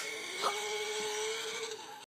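Small electric motor of a toy car whining steadily while the car sits jammed nose-first in a piggy bank's hole, with a light knock about half a second in. The whine fades out near the end.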